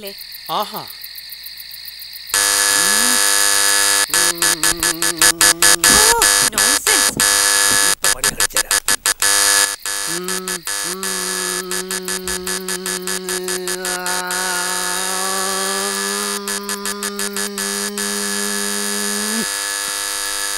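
Dissonant electronic film score or sound effect: after a quieter opening it jumps loud about two seconds in, a harsh buzzing mass of clashing tones, choppy and stuttering. From about ten seconds a long low held drone takes over, bending slightly, and cuts off just before the end.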